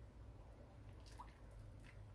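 Near silence: a faint low hum, with two soft, faint liquid sounds in the second half as a wooden spoon stirs rice and onion in broth in a pan.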